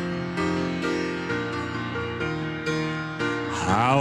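Keyboard playing the introduction to a congregational worship song, held chords changing about every half second; a singing voice comes in with vibrato just before the end.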